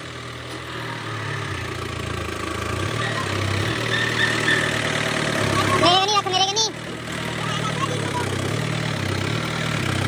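New Holland 5630 tractor's diesel engine idling, a steady low drone that grows louder over the first couple of seconds. A voice is heard briefly about six seconds in.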